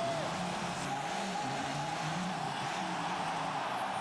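Volkswagen Race Touareg rally car's turbodiesel engine running hard as the car drives and slides around a dirt arena, a steady sound with no breaks.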